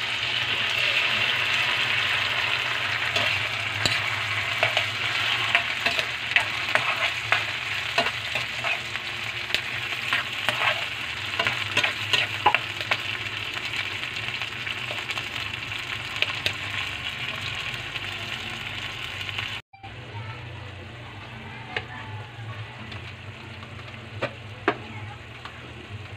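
Sardines in tomato sauce sizzling in a steel wok, with a metal spatula scraping and tapping the pan as they are stirred. The sizzle is loudest at first. After a brief break near the 20-second mark it is a quieter simmer with only occasional taps.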